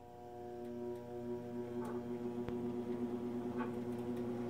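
Electric treadmill motor starting and running: a steady multi-toned whine that swells over about the first second, then holds, with a few light clicks over it.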